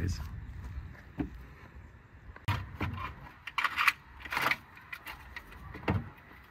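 Metal hand tools clinking and knocking against the exhaust manifold bolts as they are undone: a handful of short, scattered metallic clanks over a low background.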